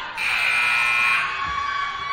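Gymnasium scoreboard buzzer sounding once, a loud steady electronic tone lasting about a second, signalling the end of a stoppage as play is about to resume.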